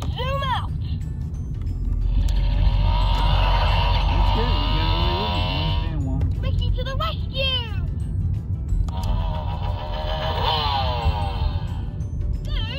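Ricky Zoom Lights & Sounds toy motorbike playing its built-in sounds through its small speaker as its try-me button is pressed: short phrases in a character voice near the start and about seven seconds in, alternating with two longer stretches of music and sound effects.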